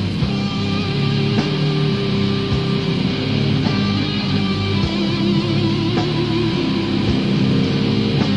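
Old-school death metal from a 1990 demo tape: distorted electric guitar riffing with bass and drums, with a sharp accent hit about once a second.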